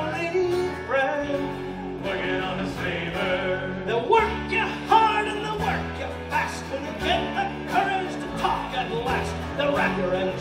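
A pirate-themed folk-rock band playing live, with acoustic guitar, electric guitars and bass guitar.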